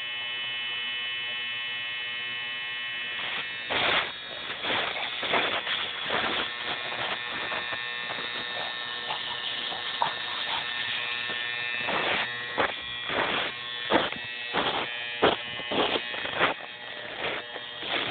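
Footsteps crunching in snow at a walking pace, starting about four seconds in, over a steady high-pitched electrical whine.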